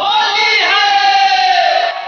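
A loud, drawn-out shouted vocal cry that starts abruptly and is held for nearly two seconds, its pitch sliding down at the end.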